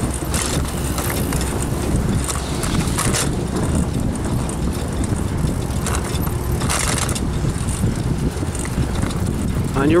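Steady wind rush on the microphone of a camera riding along on a bicycle, with the low rumble of travel over a concrete path. Brief hissy gusts come about 3 and 7 seconds in.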